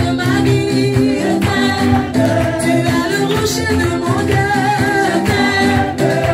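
A congregation singing a lively worship song together in chorus, with steady low notes underneath and sharp percussive strokes scattered through it.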